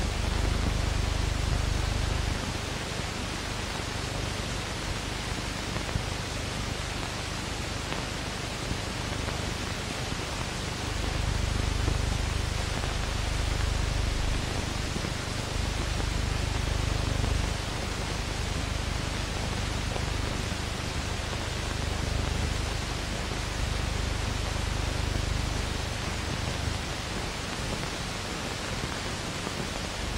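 Steady hiss of an old film soundtrack, with a low rumble underneath that swells and fades in stretches.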